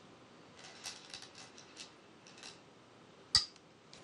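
Go stones clicking against each other in the bowl as a player takes one out, then one sharp clack as the stone is placed on the wooden board a little over three seconds in, the loudest sound.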